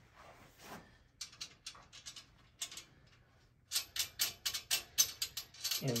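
Metal clicking from a folding steel-tube piano tilter's frame as it is screwed into place: a few scattered clicks, then a quick, even run of about six clicks a second near the end, like a ratchet.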